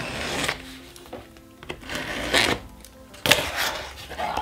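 Packing tape on a cardboard mailer box being slit with a blade, then the cardboard lid pulled open: several short scraping and tearing noises, the loudest in the second half. Soft background music plays underneath.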